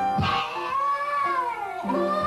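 A child's high wordless voice in one long falling wail lasting over a second and a half, with another call starting near the end. Piano notes are held underneath.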